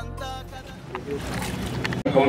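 Background music trailing off over a low, steady hum, with a single faint click about a second in.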